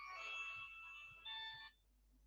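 A mobile phone ringtone playing a tune of steady electronic tones, cut off suddenly near the end as the call is answered.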